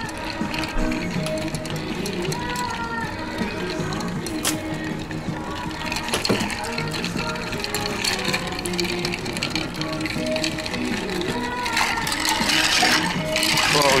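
A long bar spoon stirring ice in a glass mixing glass, giving a steady run of light clinking ticks, over background music. A voice comes in near the end.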